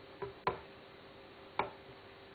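Three light knocks of a cup and steel milk jug handled on the bench during a latte-art pour, about a quarter second in, half a second in and near the end, over a faint steady hum.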